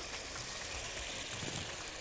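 Vinegar, oil, fried garlic and peppers simmering together in a frying pan: a steady, quiet bubbling hiss.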